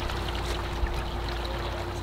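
Steady outdoor background noise: a low rumble with a faint, steady hum.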